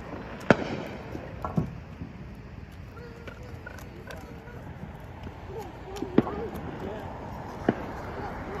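Firecrackers going off: a handful of sharp bangs at irregular intervals, the loudest about half a second in, over a steady outdoor background with faint children's voices.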